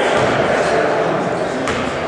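Indoor gym crowd chatter, with a basketball dribbled on the hardwood floor before a free throw: a couple of sharp bounces near the end.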